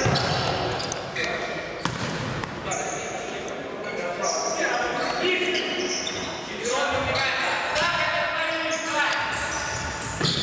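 Futsal play in a large sports hall: the ball being kicked and bouncing on the wooden floor in sharp knocks, with players shouting to each other.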